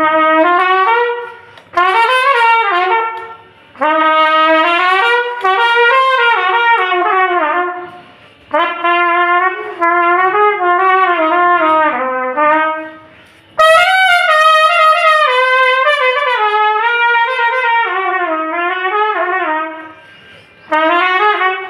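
Solo trumpet playing a slow song melody in phrases of a few seconds each, with short breaks between them. About two thirds of the way through, the tune jumps up to higher, brighter notes.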